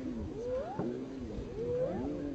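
Hyenas calling: about four overlapping pitched cries in quick succession, some arching up and down and two rising steeply in pitch.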